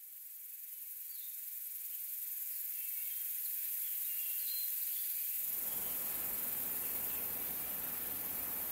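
Forest ambience fading in: a steady high insect hiss with a few faint bird chirps, joined about five seconds in by a deeper, even rushing noise.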